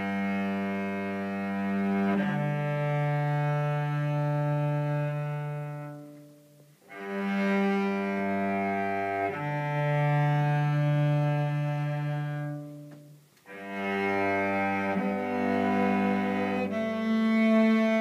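Solo cello bowing an alphorn song: long, low held notes in three slow phrases with short breaks between them, the second phrase opening with the same two notes as the first.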